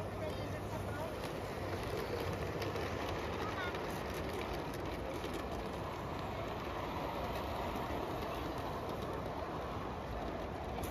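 LGB G-scale model steam train with coaches running past over the track, a steady rolling sound, under indistinct background chatter of people.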